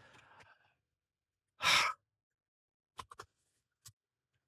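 A person sighs heavily into a close microphone just under two seconds in: one breathy exhale with no voice in it. A few short clicks follow around three seconds in and again near the end.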